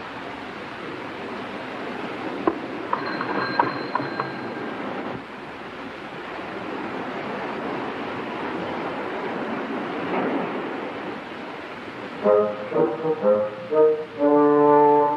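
A steady rushing noise with a few sharp clicks and knocks a few seconds in; about twelve seconds in, film-score brass comes in with a run of short, punchy notes.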